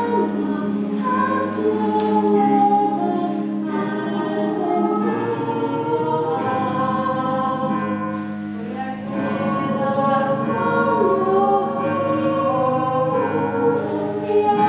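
A mixed choir of men's and women's voices singing in several parts, moving through long held chords with crisp sibilant consonants.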